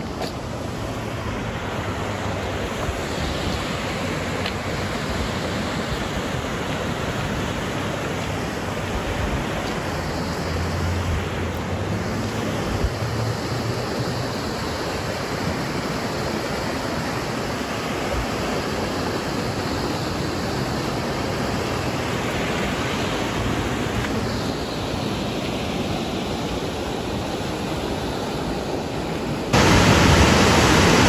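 River water rushing over and between granite boulders, a steady even rush of noise that grows suddenly louder just before the end.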